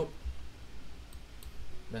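A couple of faint clicks from a computer mouse, heard in a pause between words as the on-screen chart is zoomed out.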